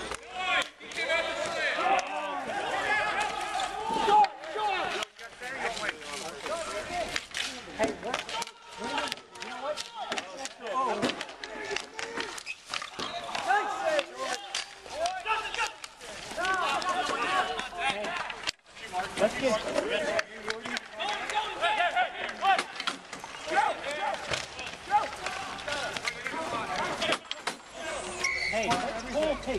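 Players' voices calling out on an outdoor street hockey rink, with frequent sharp clacks of hockey sticks and ball on the pavement and boards scattered throughout.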